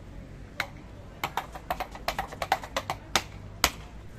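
A quick, irregular run of about a dozen sharp clicks or taps, crowded together in the middle of the stretch, over a faint low background hum.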